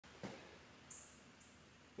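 Near silence: room tone, with a faint soft sound about a quarter second in and two faint, short, high-pitched chirps about a second in.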